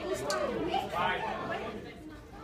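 Chatter of many voices talking at once in a large hall.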